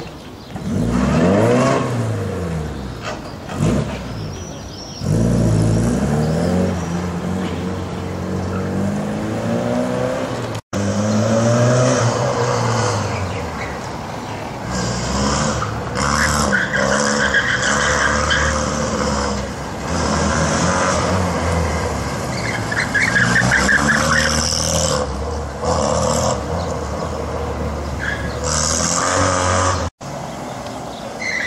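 Classic cars driven hard through a cone course on cobbles, engines revving up and down over and over as they accelerate, brake and turn, with tyres squealing at times. The sound drops out for an instant about eleven seconds in, and a second car follows.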